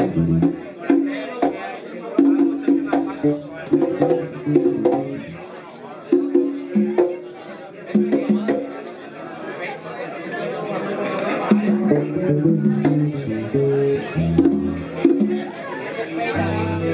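Live band jamming: guitar and keyboard notes with hand-drum taps, over people talking in the room. It is quieter for a few seconds in the middle.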